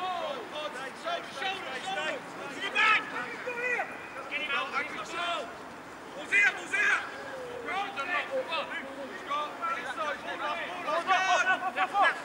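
Rugby players and touchline spectators shouting and calling across an open pitch, the words unclear, over a steady outdoor background hiss. The calls come in bursts, loudest about three seconds in, about six and a half seconds in, and just before the end.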